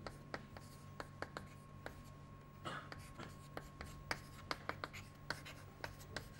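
Chalk writing on a chalkboard: a string of sharp taps and short scratches as letters and symbols are written, with one longer scratchy stroke a little before halfway. A faint steady hum lies underneath.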